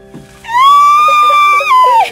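A woman's long, high-pitched squeal of delight, held for about a second and a half from about half a second in and dipping at the end, over faint steady low tones.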